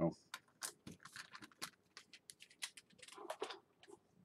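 Pennies being handled and slipped into a package: a run of light, irregular clicks and taps, thickest a little after three seconds in.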